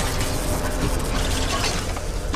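Horror-film sound effect of an animatronic chicken's mechanical works: dense, rapid clicking and grinding of gears and servos over a steady low rumble.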